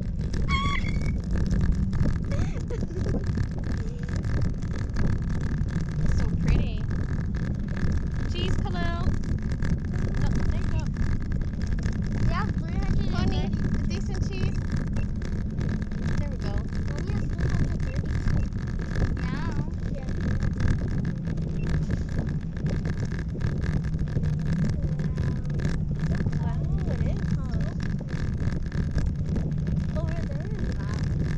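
Wind buffeting the camera's microphone high up under a parasail, a steady low rumble throughout, with faint voices now and then.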